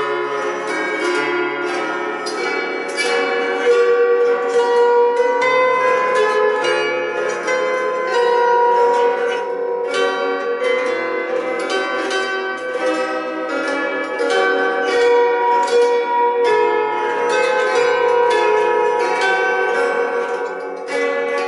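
Two six-chord guitar zithers with mandolin-style paired stringing played together in two parts: a plucked, ringing melody over regularly strummed chords. By the players' own account, the two instruments are not quite in tune with each other.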